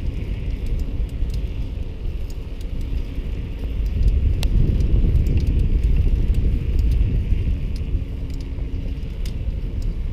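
Riding noise from a camera carried on a moving bicycle: a steady low rumble of wind on the microphone and tyres rolling on the paved trail, louder for a few seconds in the middle. A few small sharp clicks and rattles come through, the clearest about halfway through.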